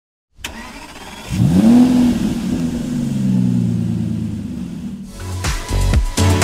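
A car engine starting: it catches, the revs flare up and then die slowly back. Electronic dance music with a steady beat comes in near the end.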